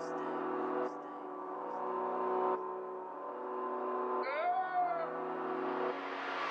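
Intro of an instrumental UK drill beat: sustained synth chords with no drums or bass yet. A short pitch-bending sample comes a little past the middle, and a rising noise sweep starts building near the end.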